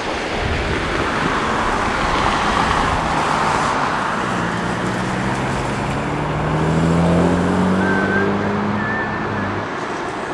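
Jaguar F-Type convertible driving past with tyre noise, then accelerating away, its engine note rising in pitch and loudest about seven seconds in.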